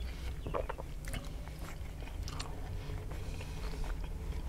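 Close-up mouth sounds of a man biting into a ham, egg and cheese melt breakfast sandwich and chewing it, with irregular wet smacks and soft crunches, the strongest about half a second in. A steady low hum runs underneath.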